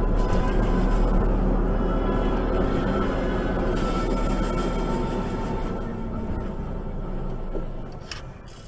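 Steady low engine rumble and road noise of a vehicle driving, picked up by a dashcam, easing off slightly near the end.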